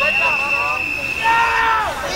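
Indistinct voices talking, under a steady high-pitched tone that holds until near the end, joined by a lower steady tone in the second half.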